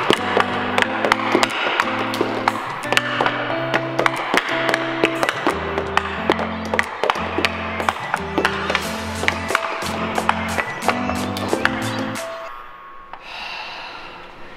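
Background music with a bass line over rapid, irregular clacking of a hockey stick blade and puck on a plastic stickhandling board. The music stops about twelve seconds in and the clacking fades with it.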